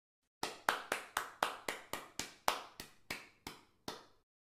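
A rapid run of about fourteen short, sharp strikes, like claps or taps, about four a second, growing fainter toward the end.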